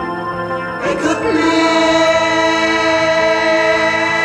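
Progressive rock music in a slow passage: a sustained chord with choir-like voices, swelling about a second in and held steady.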